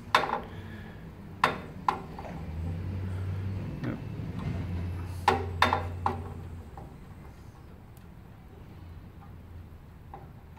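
Sharp metallic clicks from a balance-beam physician's scale being adjusted at its calibration screw with a flat screwdriver. There is one click right at the start, two about a second and a half in, and three close together around five to six seconds in. A faint low hum runs underneath through the middle.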